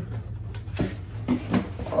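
Large cardboard moving box being tilted and handled, giving a few soft knocks and scrapes.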